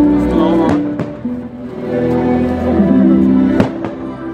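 Fireworks show music playing over park loudspeakers, with two sharp firework bangs, one near the start and one near the end.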